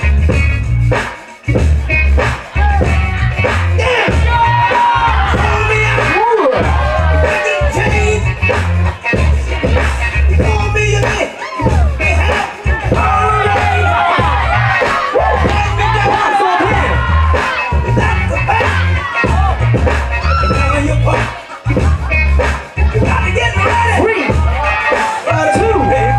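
Hip hop track played loud over a club sound system by the battle DJ, with a heavy bass beat that drops out briefly a few times.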